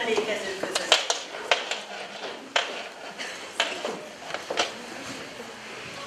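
Hard-soled footsteps on a wooden stage floor: sharp single clicks, roughly one a second, over a quiet hall.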